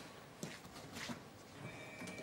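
Quiet room tone with a few faint, light knocks.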